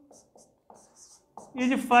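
Marker pen writing on a whiteboard: several short, faint strokes as an equation is written, then the voice comes back near the end.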